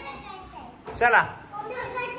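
Speech only: children's voices in a room, with one short, loud call of "chala" ("come on") about a second in.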